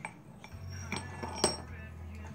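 Steel gears on a transfer-case intermediate shaft clinking as they are handled: a few light metallic clicks, the sharpest about one and a half seconds in, each with a short ring.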